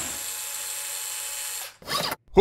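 Steady whirring noise from a small red toy car moving across the floor, cutting off shortly before the end.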